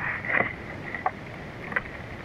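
Hands digging and rummaging in soil and dry leaf litter at a burrow entrance, with a few soft brief clicks and crackles over a steady faint background hiss and hum.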